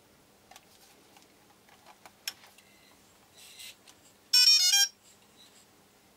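DJI Phantom 3 quadcopter powering on: a few faint clicks of the battery being handled, then the aircraft's short startup tune, a quick run of stepped electronic beeps lasting about half a second, a bit past four seconds in.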